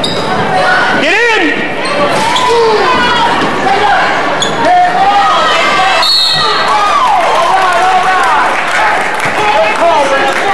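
Basketball sneakers squeaking on a hardwood gym floor as players cut and stop: many short squeals, each rising then falling, the strongest about a second in. A basketball bounces now and then.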